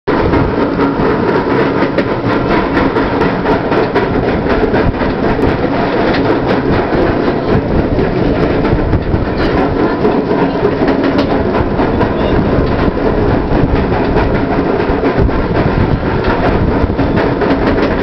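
SheiKra roller coaster train being pulled up its chain lift hill: the lift chain clatters steadily while the anti-rollback dogs click in a fast, even rhythm.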